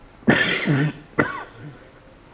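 A man clearing his throat and coughing: a harsh burst about a quarter second in, then a shorter, sharp one just after a second.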